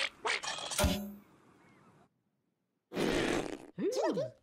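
Cartoon sound effects and music: a few short sounds in the first second, one with a low buzzy tone, then a second of silence and a burst of rushing noise near the end.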